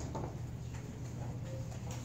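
Chalk writing on a blackboard: a few sharp, irregular taps of the chalk striking the board, over a steady low room hum.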